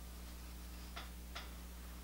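Two faint, short clicks about a third of a second apart, about a second in, over a steady low hum.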